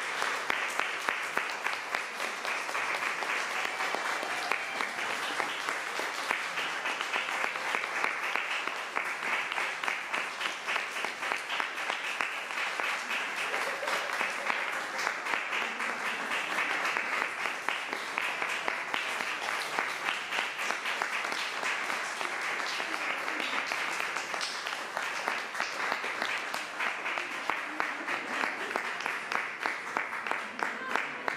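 Audience applauding steadily: a dense patter of many hands clapping that keeps up without a break.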